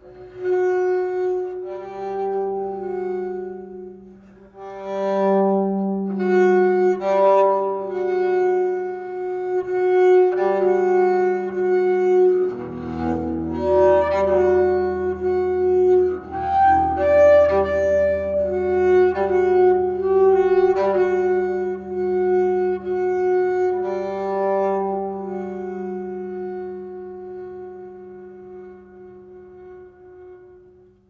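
Solo double bass played with the bow: two notes held together and re-bowed again and again, with a lower note entering about twelve seconds in and sustaining under them. The playing fades away toward the end.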